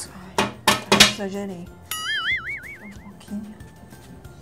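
Background music with a few sharp, ringing clinks in the first second, followed by a cartoonish wavering whistle-like tone lasting about a second: comic sound effects in an edited skit.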